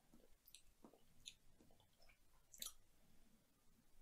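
Near silence with a few faint, short mouth clicks and lip smacks from someone tasting a drink, the clearest near the end.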